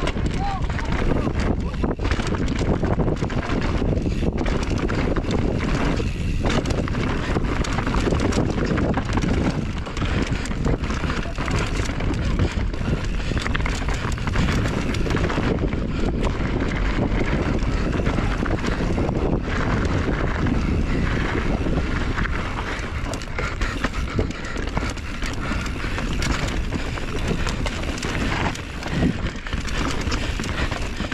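Mountain bike descending a dirt trail at speed: steady wind buffeting on the camera microphone, with tyres rolling over dirt and the bike rattling over bumps in many short knocks.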